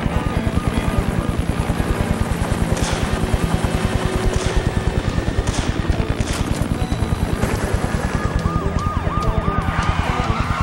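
Police car sirens in a rapid yelp over dramatic chase music with a fast pulsing beat; the sirens fall back in the middle and come up again strongly near the end.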